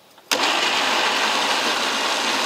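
Electric mixer grinder (mixie) switching on about a third of a second in and then running steadily, loud and even, as it grinds soaked puffed rice into a smooth batter.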